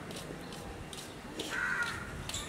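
A crow cawing once, a single harsh call near the end, over faint outdoor background noise.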